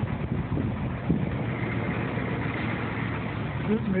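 Ford 6.9L IDI V8 diesel idling steadily with its even diesel clatter, heard from inside the truck's cab.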